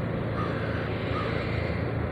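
Two faint, short calls from common ravens, about half a second and a little over a second in, over a steady low hum.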